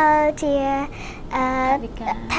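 A high voice singing a slow melody in long held notes, with a short break about a second in.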